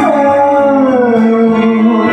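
Karaoke backing track in an instrumental passage: a sustained melody line slides down in pitch over the first second and a half over a steady held low note.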